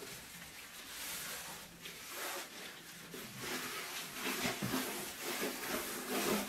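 A gloved hand wiping foamy cleaner and loosened carbon off a metal baking tray with a paper napkin: faint, irregular soft rubbing and swishing strokes.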